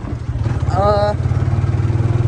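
A small motorcycle engine running steadily while riding, getting louder about half a second in as it pulls harder.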